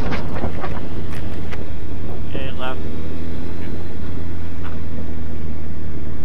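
2005 Suzuki GSX-R1000 inline-four with a full Yoshimura exhaust, running at a steady cruise with an even low drone and no revving.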